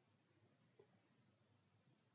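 Near silence: room tone, with one faint, sharp click a little under a second in.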